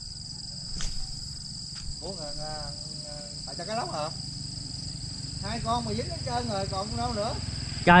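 A steady, high-pitched insect chorus keeps going without a break, with a couple of faint clicks in the first two seconds and voices talking in between.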